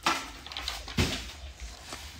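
Two short rustling, knocking handling noises, one at the start and one about a second in, each fading quickly: a child handling stickers and the cardboard pizza base.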